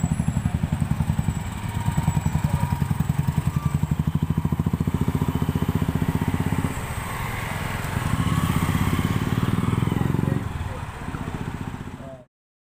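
Motorcycle and scooter engines running close by, a steady low throbbing exhaust beat; the engine sound changes about seven seconds in as other bikes come through.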